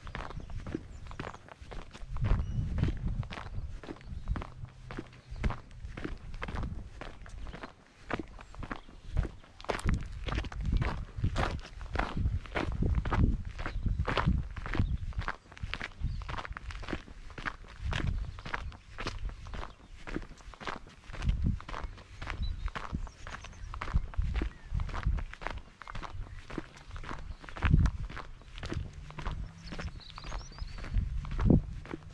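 Footsteps on a dry, sandy dirt track at a steady walking pace, about two steps a second.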